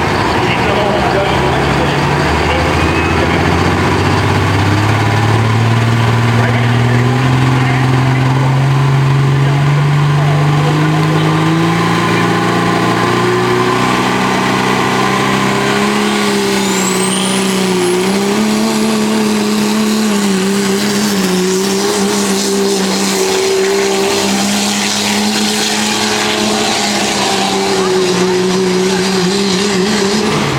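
Dodge Ram pickup's Cummins inline-six turbodiesel under full load pulling a sled: the engine's pitch climbs steadily for about twelve seconds, then holds high with small dips as it labours. A high whistle rises and holds from about seventeen seconds in, and the revs drop right at the end.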